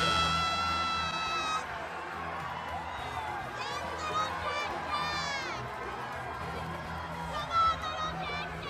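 A woman screaming in a high pitch, cheering on a crawling baby: one long held scream that stops about a second and a half in, then shorter rising-and-falling shrieks around the middle and near the end, over crowd chatter.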